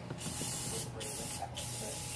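An aerosol spray can hissing in two bursts: a short one of about half a second, then a longer one of over a second after a brief pause.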